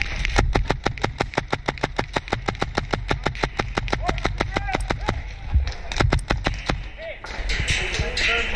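HPA-powered Tippmann M4 airsoft rifle firing rapid semi-automatic shots, about five or six a second, for roughly five seconds, then a few more shots after a short pause.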